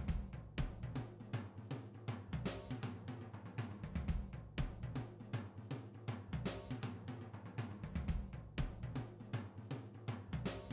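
Background music with a steady drum-kit beat.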